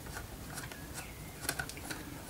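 Small Pozidriv screwdriver turning in the small screws of a plastic traffic-light lens frame, making faint scattered clicks, a little louder about one and a half seconds in, as the lens screws are undone.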